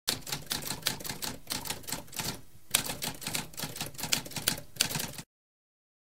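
Typewriter keys being typed in a rapid run of sharp clacks, with a brief pause about halfway through. The typing cuts off suddenly a little after five seconds.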